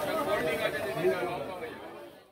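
Background chatter of several people's voices, fading away near the end.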